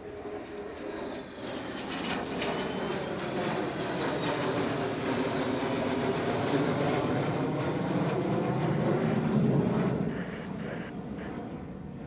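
Jet roar from a formation of three jet fighters passing over, building steadily to its loudest about nine to ten seconds in, then dropping away.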